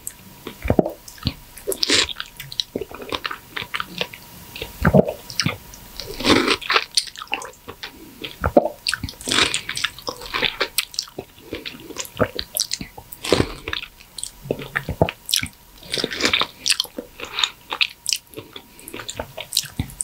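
Biting and chewing soft, juicy ripe mango flesh: mouth sounds of wet clicks and smacks coming in irregular bursts.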